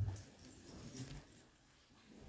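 A soft thump as a person settles into a chair, followed by faint shuffling and rustling of her moving in the seat.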